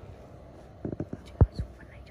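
A few soft, low thumps close to the microphone, bunched together about a second in, with faint whispered voice sounds over a quiet background hiss.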